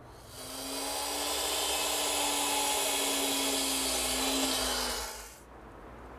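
Power miter saw starting up, running for about four seconds with a steady motor hum while cutting a pine rail to length, then winding down.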